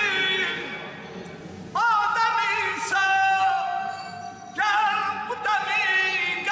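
A man singing solo and unaccompanied, holding long ornamented notes in slow phrases.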